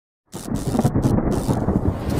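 Thunderstorm sound effect: a low rumble of thunder with rain hiss, starting suddenly about a third of a second in after silence. The hiss cuts out briefly a few times.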